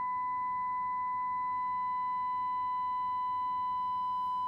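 A steady single-pitch test tone is heard through a second CB radio that is monitoring a Cobra 29 NW Classic CB's transmission, the tone modulating the transmitter. Faint overtones ride on it as distortion, and one grows a little about halfway through as the modulation climbs past 100%.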